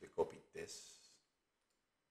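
A man's voice speaking briefly in the first second, then near silence broken by faint computer mouse clicks.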